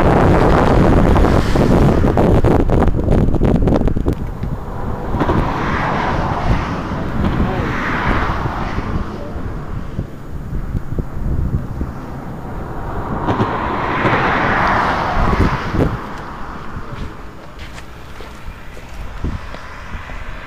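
Wind buffeting the microphone with a rumbling roar for the first few seconds. After that, road traffic: vehicles pass one after another, each one's noise swelling and fading away.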